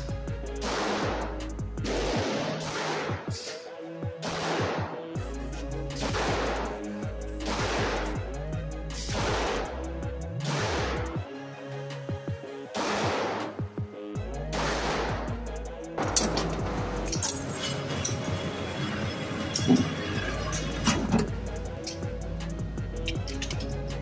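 Springfield Armory Prodigy pistol firing a slow string of shots, about one a second, each with a short echo in the indoor range, for roughly the first sixteen seconds, over background music. The rounds are handloads under load development.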